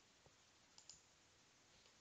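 Near silence with a few faint computer mouse clicks: one about a quarter second in, then a quick double click near the middle.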